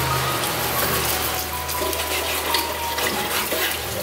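A steady, dense rushing noise like running water, laid over low background music; it cuts off abruptly at the end.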